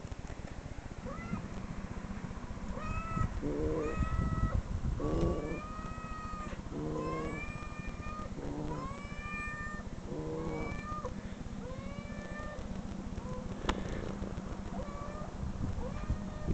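Recorded cat meows played back through computer speakers: a steady string of short, high, arched meows about one a second, with lower meows mixed in among them.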